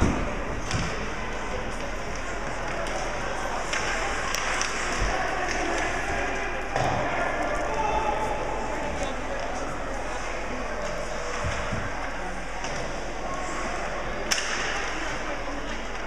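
Ice hockey rink ambience during play: a steady murmur of voices with scattered knocks and thumps of sticks, puck and players against the boards. A sharp knock comes at the very start and another near the end.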